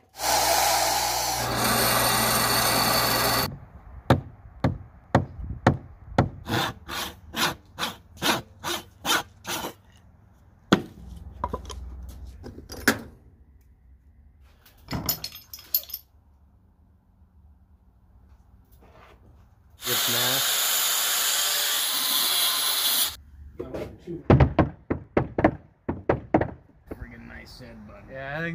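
Woodworking sounds: a power tool runs steadily for about three seconds at the start and again about twenty seconds in. Between and after these come runs of sharp knocks on wood, about two a second.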